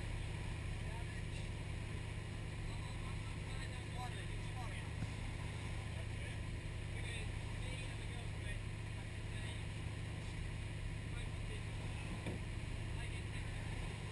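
A motorboat's engine running steadily at cruising speed, a constant low hum under the rush of wind and water.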